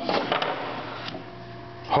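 Resawn cocobolo boards swung open like a book, the wood sliding and scraping on a steel table-saw top, with a sharp click about half a second in.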